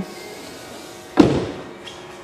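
A car door swung shut on a 2005 BMW 325i E90 sedan: one solid thud about a second in, fading quickly.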